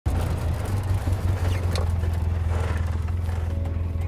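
Side-by-side UTV's engine running with a steady low drone as the machine drives up a grassy slope and comes to a stop.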